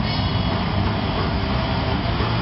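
A heavy metal band playing live on stage: distorted electric guitars, bass and fast drums blended into a loud, dense wall of sound.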